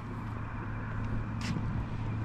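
Street ambience with a steady low hum of road traffic and a single short click about one and a half seconds in.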